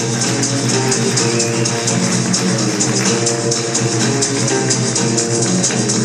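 Live big band music with a steady beat.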